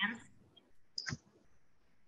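A single short, sharp click about a second in, after the tail of a spoken word; faint room tone follows.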